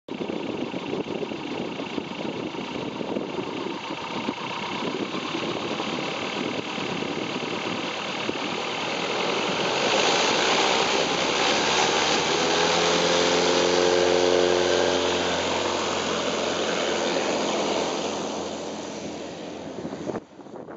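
ULPower UL260i four-cylinder, air-cooled, direct-drive aircraft engine and propeller running at power as the plane rolls past on the runway. It grows louder to a peak about two-thirds of the way through, its pitch sliding down as it passes, then fades as the plane moves away.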